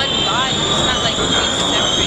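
Busy city street noise with a steady, high-pitched squeal running through it, and a few brief rising chirps in the first half second.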